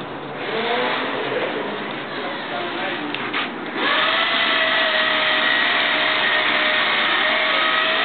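Patty-O-Matic hamburger patty machine switched on about halfway through: after a couple of clicks, its electric motor's whine rises quickly and then runs loud and steady as the knockout cup cycles.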